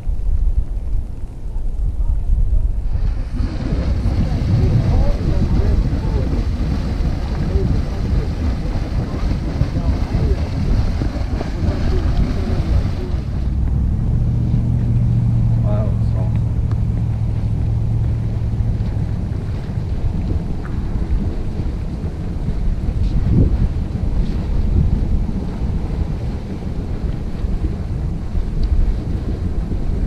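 Wind rumbling on the microphone throughout. A louder hissing rush runs from about three to thirteen seconds in, and a steady low hum comes briefly in the middle.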